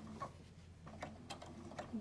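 Domestic sewing machine stitching slowly in straight stitch, hemming a fabric edge with a rolled hem foot: light, irregular ticks.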